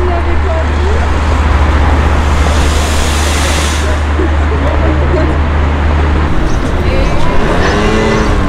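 Outdoor promenade ambience: a steady low rumble that cuts off suddenly about six seconds in, a rushing swell around three seconds, and passers-by talking, louder near the end.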